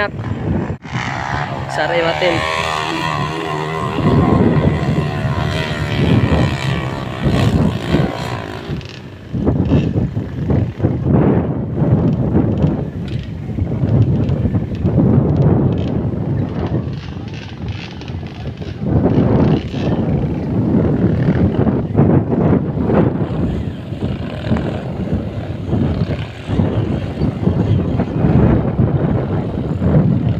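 Underbone motorcycle engines revving on a steep dirt hill climb, the pitch wavering and surging, mixed with people shouting.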